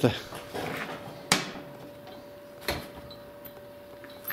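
Two sharp knocks about a second and a half apart, the first the louder, as the grain dryer's freshly refitted drive chain and hand tools are handled, over a faint steady hum.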